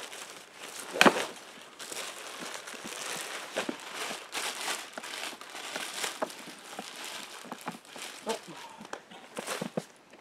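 Plastic wrapping and a fabric carry bag rustling and crinkling as a packed air mattress is pulled out and handled, with a sharp snap about a second in.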